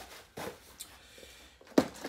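Cardboard box and packing rustling and scraping as an electric scooter motor is lifted out, then one sudden loud thump near the end as the emptied box is put down on the concrete floor.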